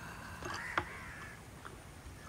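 A bird call: one drawn-out, arching call lasting about a second, with a sharp click near the middle.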